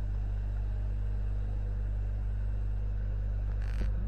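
Steady low electrical hum in the recording with no speech, and a brief soft hiss near the end.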